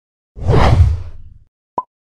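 Logo ident sound effect: a deep whoosh that swells and fades over about a second, then a single short ping near the end.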